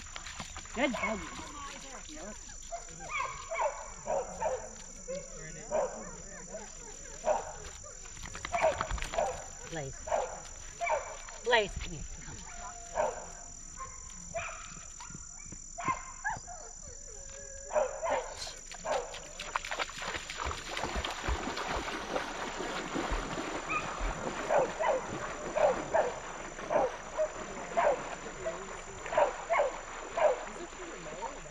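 A dog whining and yipping in many short, pitched calls that come in irregular runs.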